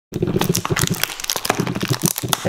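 Cardboard cologne box being handled and opened by hand: a rapid run of crinkling, scraping and small clicks from the packaging.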